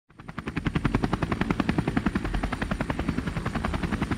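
A rapid, even pulsing, about eight or nine beats a second, like a rotor chop. It fades in over the first half second, with a faint steady high whine under it.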